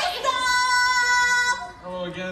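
A high voice holding one steady sung note for about a second and a half, then stopping.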